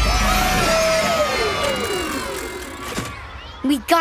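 Cartoon voices yelling in long drawn-out cries that slide down in pitch and fade over about three seconds, over a low hum that dies away, as a spinning fairground ride winds down.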